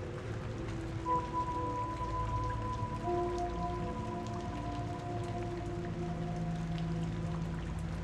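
Ambient background music: steady held tones come in one after another, the first about a second in and more around three seconds in, over a faint crackling, rain-like noise.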